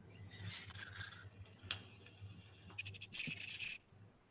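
Faint clicks and soft rustling over a low steady hum, with a quick run of clicks near the three-second mark.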